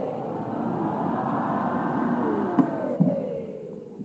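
Many voices singing together in long held notes that slide downward, dying away near the end of the phrase. Two short knocks sound shortly before it fades.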